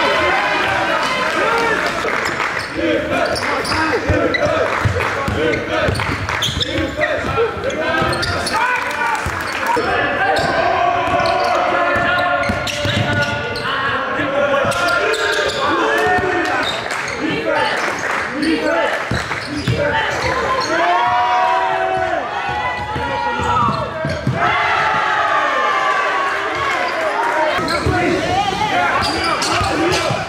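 Live game sound in a large gym: a basketball bouncing repeatedly on a hardwood court, with players' voices calling out over it.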